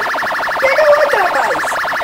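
A steady electronic buzz made of rapid, evenly spaced pulses, like an alarm tone, with a voice faintly under it near the middle.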